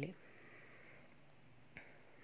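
Quiet room tone with a single short, sharp click shortly before the end.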